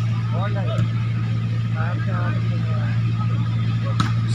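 A steady low hum runs throughout, with a few distant voices calling out about half a second in and again around two seconds.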